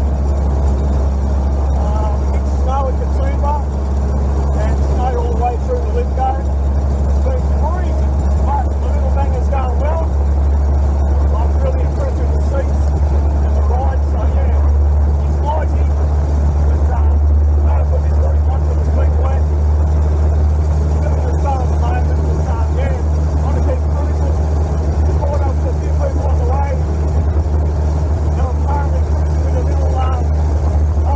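Ford Model A's four-cylinder engine running steadily under way, heard from inside the cab as a constant low hum.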